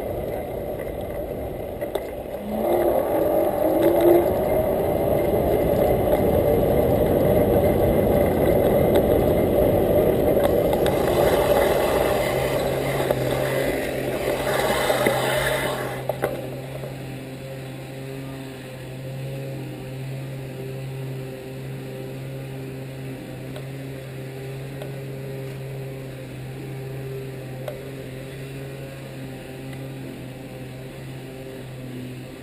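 Electric bike under way on pavement: wind and tyre noise, with the Crystalyte HS3540 hub motor's whine rising in pitch as it accelerates about three seconds in. About sixteen seconds in the noise drops away as the bike stops, leaving a steady low hum.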